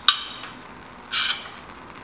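A sharp clink of a glass rod or metal tool knocked on the lampworking bench at the start, then a short rustling scrape about a second later.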